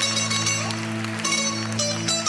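Music: a plucked string instrument picks a quick run of notes over a steady low drone.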